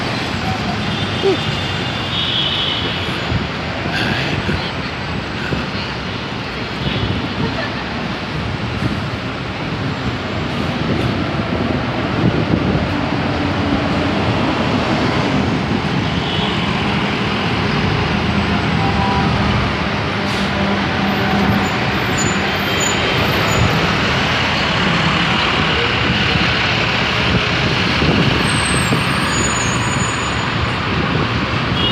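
City street traffic: buses, trucks and cars running and passing in a steady, loud wash of engine and tyre noise, a little louder in the second half.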